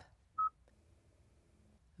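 A single short, high electronic beep from a Kia infotainment touchscreen about half a second in. It confirms the press of the Setup button.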